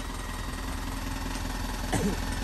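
Truck engine idling steadily, a low, even hum.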